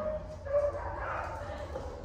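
A dog whining in short high-pitched notes, one at the start and another about half a second in, over a steady low hum.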